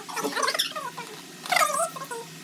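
A domestic animal's high-pitched, wavering calls, several short ones in a row, the loudest about one and a half seconds in.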